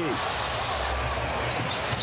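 Basketball arena crowd noise, a steady murmur and rumble, with a ball being dribbled on the hardwood court.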